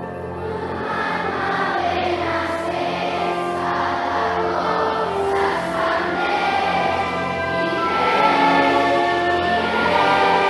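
A large children's choir singing long, held notes with instrumental accompaniment, swelling louder over the first couple of seconds and again near the end.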